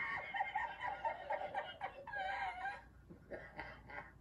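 A man laughing hard in high, wavering bursts, easing off near the end.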